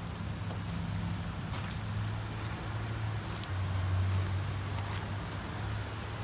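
Footsteps on a wet gravel and mud driveway, a few soft crunching steps, over a steady low hum and the hiss of rain.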